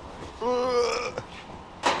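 A person's voice: one drawn-out vocal call lasting under a second, about half a second in.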